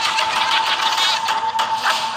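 Film-trailer sound effects: a dense, rapid mechanical clatter with a steady high tone over it.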